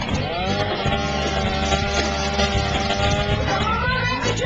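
An engine revs up, holds a steady pitch and rises again in pitch near the end.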